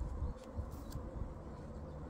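Hands pressing and working loose potting soil around newly planted seedlings, a soft scratchy rustle of soil and mulch, over a faint steady hum.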